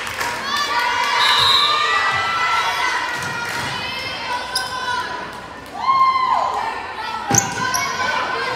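Young players and spectators calling out and chattering in a school gym, with a single sharp thud of a volleyball about seven seconds in.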